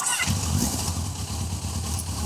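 Kawasaki GTR1000 Concours motorcycle's inline-four engine idling steadily with a low, even rumble.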